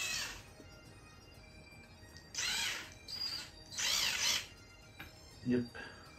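DeWalt 20V cordless drill driving a screw through a thin metal band into the lamp's metal frame. Its motor whine stops shortly after the start, then comes back in short bursts about two and a half and four seconds in.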